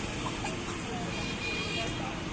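Busy street ambience: a steady hum of traffic with scattered voices of people chatting in a crowd.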